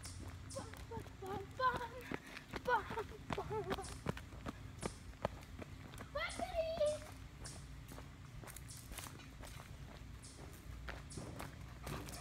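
Footsteps on asphalt, a scatter of sharp clicks that thins out for a few seconds past the middle, with faint voices in between, clearest about six seconds in.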